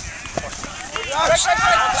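Players' voices shouting across an open field, faint in the first second and louder in the second half.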